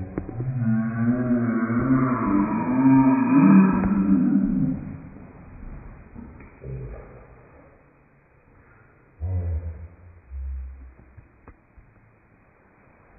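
A person's voice drawn out low and slow, sliding up and down in pitch, for about the first five seconds. Then it is much quieter, with two short low thuds near the end.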